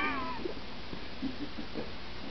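A short, high cry with a falling pitch, fading out within the first half second, like a meow; then only faint small sounds.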